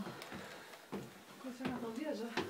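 Footsteps climbing stairs, a short knock about every half second, with heavy breathing and a voiced groan from the tired climber in the second half.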